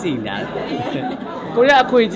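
Voices only: several people talking over one another in a large room, with one voice louder near the end.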